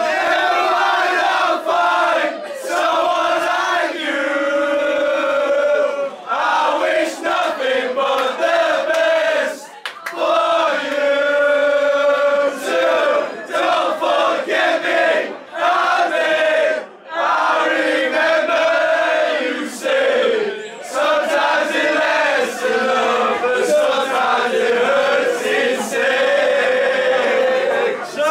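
A group of men loudly singing a chant together in unison, line after line, with brief pauses between the lines.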